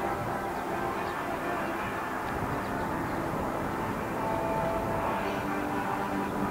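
A steady, distant mechanical drone with a few faint held tones over a constant wash of noise.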